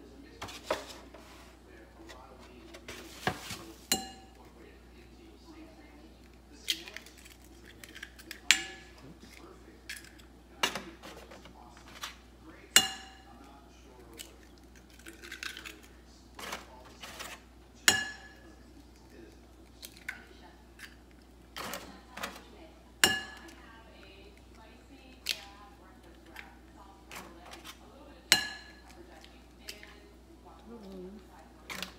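Eggs cracked one after another against a ceramic bowl: about fifteen sharp taps at irregular intervals, each with a short ringing of the bowl.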